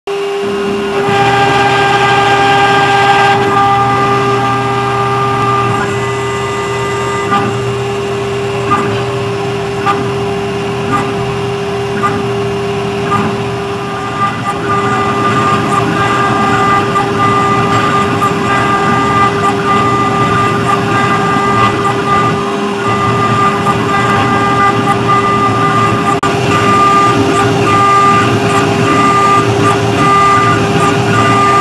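CNC engraving machine spindle running with a steady whine while its cutter engraves a steel plate, with a short sharp tick about once a second in the middle stretch. The cutting noise then turns rougher and denser.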